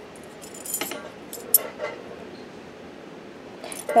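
Thin metal cutting dies clinking lightly against each other as a set of four butterfly dies is handled in the hand: a few light clicks, the sharpest about one and a half seconds in.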